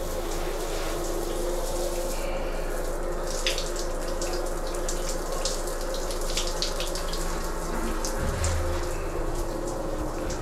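Shower running steadily, water spraying onto a tiled stall floor, with scattered splashes and clicks over the spray.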